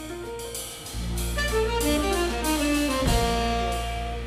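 Small jazz band playing live: piano notes over a bass line and drum kit with cymbal strokes. The bass and drums get fuller about a second in.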